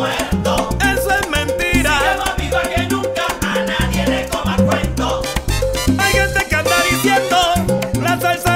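A salsa track playing, with a steady beat over a repeating bass line.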